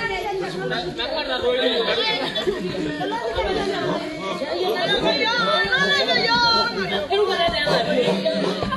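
Several people's voices chattering and talking over one another, with no single clear speaker.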